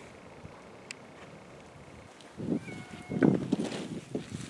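Faint outdoor background, then about a second of rustling and knocks starting about two and a half seconds in, with a short, faint pitched call among them.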